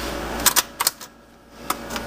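Four sharp handling clicks from the hand-held gear, three close together about half a second in and one more near the end, over a steady background hum that dies away for a moment in the middle.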